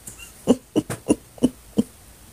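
A woman laughing: five short breathy bursts, about three a second.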